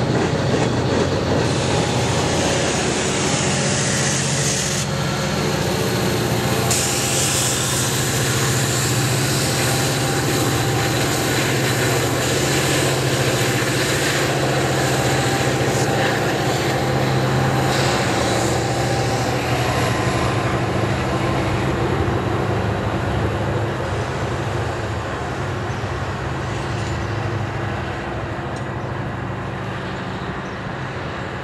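A freight train's cars rolling by on steel rails, a steady rumbling clatter of wheels on track with the low sound of the diesel locomotive under it. The sound grows fainter over the last ten seconds or so as the train moves away.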